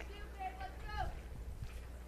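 Faint, distant voices calling out across the softball field, over a low, steady rumble.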